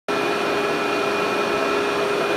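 Workhorse vacuum cleaner running steadily over low-pile commercial loop carpet: a steady motor whine over the rush of air, starting abruptly right at the start.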